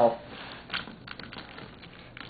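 Scissors cutting through packing tape on a cardboard box: a short scratchy cut, a sharp snip just under a second in, then a few faint clicks.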